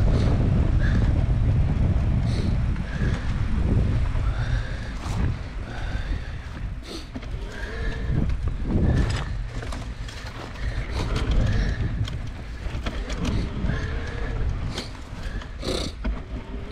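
Mountain bike ridden over a sandy dirt trail, heard from a handlebar-mounted camera: wind rushing on the microphone, strongest in the first few seconds, with clattering knocks over bumps and short squeaks repeating throughout.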